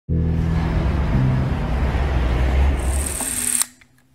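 Logo sting sound effect: a deep, loud pitched bass tone under a dense noisy swell, topped near the end by a bright hiss that cuts off sharply just before the sound falls away to near silence.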